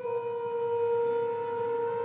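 Chamber orchestra of alto flute, horn and strings playing a single long, steady held wind note. The note is re-attacked with a slight drop in pitch right at the start.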